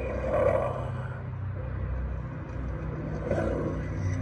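Low, steady rumbling sound effect from an animated pumpkin-head scarecrow Halloween prop's speaker, with two growl-like swells, one at the start and one about three seconds in.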